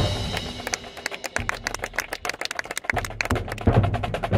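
Marching band percussion section playing a fast, exposed passage of sharp stick clicks and drum strokes, right after the full band's held chord cuts off. Low bass-drum hits come back in about three seconds in.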